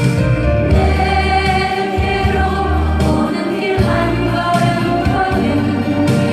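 A woman singing a Korean song into a microphone over an instrumental accompaniment track, the melody held in long sung lines.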